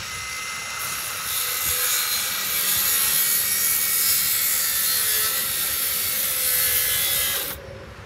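Circular saw cutting across a wooden 4x4 post: a steady, loud cut that starts about a second in and stops suddenly near the end.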